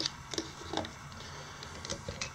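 Faint, scattered light clicks and taps of a small plastic drone propeller and a pair of digital calipers being handled and set down on a tabletop.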